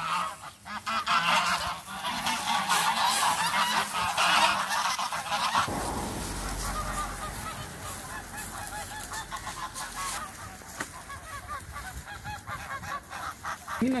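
A flock of white domestic geese honking continuously, many short calls overlapping, as they crowd after someone carrying bread. The calling is densest and loudest in the first half and thins out later.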